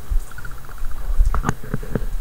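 Handling noise from a handheld camera being swung around: a low rumble on the microphone with a few sharp clicks about a second and a half in.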